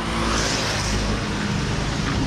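Street traffic going by on a wet road: a steady engine hum under a hiss that is strongest about half a second in.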